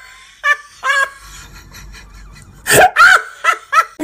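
Laughter in short, separate bursts: two brief ones in the first second, a louder, longer laugh about three seconds in, then two quick bursts near the end.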